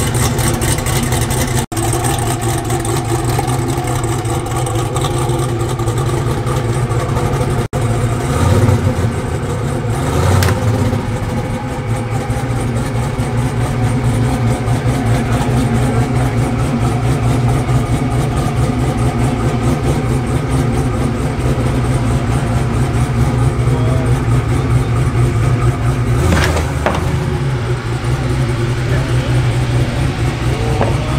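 Hennessey Venom F5's twin-turbo V8 idling with a steady low rumble. It rises briefly in revs twice about eight to ten seconds in and once more near the end.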